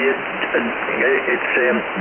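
A man speaking over a 10-metre amateur radio single-sideband voice signal, heard through a shortwave receiver. The voice is narrow, cut off above about 3 kHz, with steady band noise under it.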